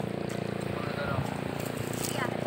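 A motor running steadily at an even pitch, with faint voices.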